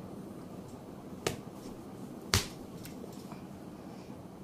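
Two sharp clicks about a second apart, the second louder, over a steady low room hum.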